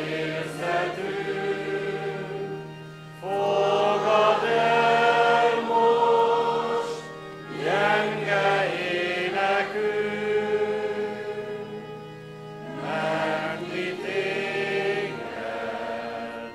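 A standing church congregation singing a slow hymn together, long held notes in phrases of about four seconds with short breaths between, over a steady low accompaniment note that stops near the end.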